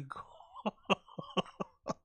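A man's stifled, breathy laughter: a run of about six short bursts, coming about four a second.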